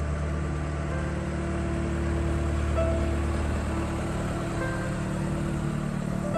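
Small canal work boat's engine running steadily as the boat passes, a constant low drone with a few faint brief chirps over it.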